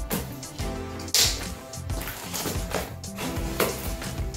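Background music, with a few sharp clicks as plastic snaps on the solar cooker's reflector panels are pressed shut, the clearest about a second in and again near the end.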